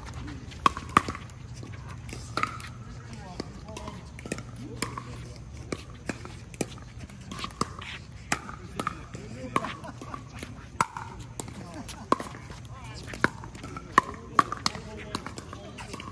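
Pickleball paddles striking a plastic pickleball in a rally, a string of sharp, irregular pops, some of them from games on the neighbouring courts.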